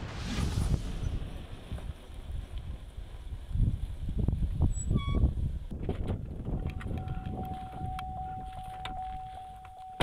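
Sound effects under an animated map graphic: a swoosh at the start over a low rumble, a short bright ding about halfway through, and a steady held tone over the last three seconds.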